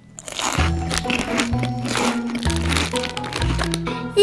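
A child crunching and chewing animal crackers, a quick run of crackling crunches, over background music with a steady bass line.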